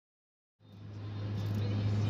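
Silence, then about half a second in, the steady low hum and road noise of a car driving, heard from inside the cabin, fading in and growing louder.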